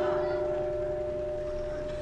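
A faint steady ringing from the public-address system, two held tones left hanging after the voice, slowly fading. The lower tone dies away near the end and the higher one carries on.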